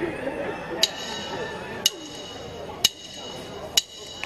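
Four sharp metallic clicks about a second apart, a count-in before the backing track comes in, over faint background chatter.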